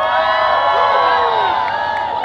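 Crowd of spectators cheering and whooping, many voices overlapping in long high calls that start together and begin to die down near the end.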